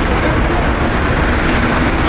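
Gas flame of the Eternal Flame burner, a loud steady rushing noise with a deep rumble.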